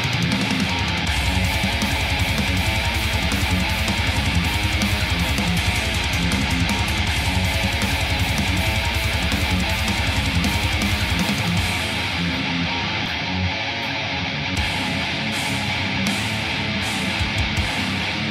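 Heavy metal music led by electric guitar. About twelve seconds in the deep bass drops away and the mix thins out.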